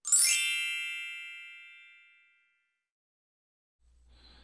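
A bright, shimmering chime sound effect, a logo sting: one sparkly ding at the very start that fades away over about two seconds.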